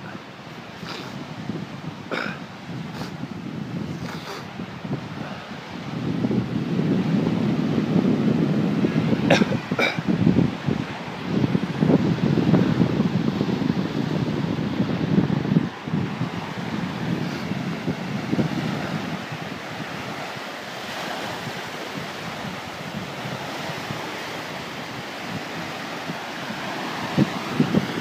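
Small Gulf of Mexico waves washing onto a sandy shore, a steady hiss of surf, with wind buffeting the microphone in gusts that are strongest from about six to sixteen seconds in.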